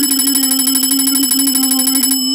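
A bell ringing continuously with a rapid, even trill at one steady pitch, in the manner of an electric alarm or telephone bell.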